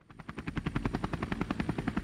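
Helicopter rotor sound: a fast, even chop of the blades at about a dozen beats a second, fading in quickly at the start, with a thin high whine over it. It is far louder and fuller than a small toy rotor spun by hand, so it is most likely a helicopter sound effect laid over the toy's spinning blades.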